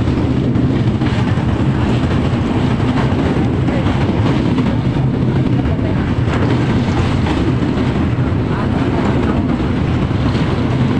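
Passenger train running over a steel truss bridge: a steady, loud rumble of the wheels and coach, heard from inside the moving carriage.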